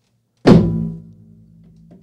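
A Shake Weight set down on a wooden desk: one sudden loud thunk about half a second in, followed by a low ringing that fades over about a second.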